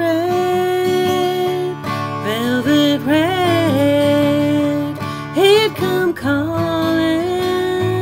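A woman singing a country song to her own acoustic guitar accompaniment, holding long notes at the ends of her lines.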